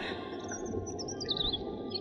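Small birds twittering in short, quick high chirps over a steady background hiss: a recorded birdsong ambience of the kind used in a radio drama's outdoor scene.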